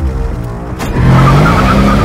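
Mercedes-AMG E 63 S twin-turbo 4.0-litre V8 revving up, rising in pitch from about a second in, with a tyre squeal over it. Music plays underneath.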